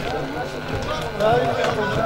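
Background talk: several voices speaking at once, with no music playing.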